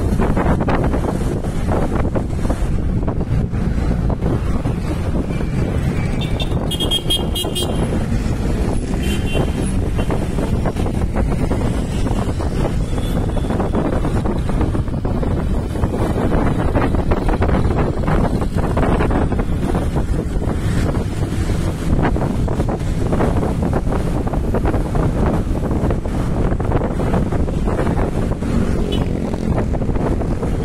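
Traffic noise heard from inside a moving vehicle: the steady rumble of its engine and tyres, with other cars and motorcycles on the road. A brief high-pitched sound cuts through about seven seconds in.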